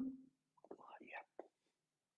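The trailing end of a man's spoken word, then a few faint whispered words, then near silence.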